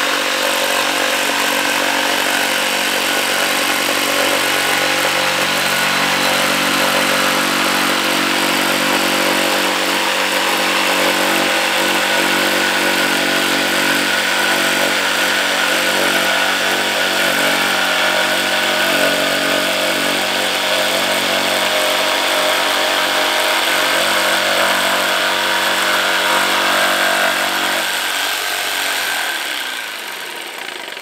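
Electric jigsaw fitted with a Wolfcraft clean-cut HCS wood blade, running steadily under load as it saws a straight line through 18 mm laminated particleboard. The motor and blade stop just before the end.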